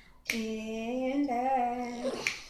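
A woman singing unaccompanied: one drawn-out sung phrase, starting about a quarter second in and held with small wavers in pitch.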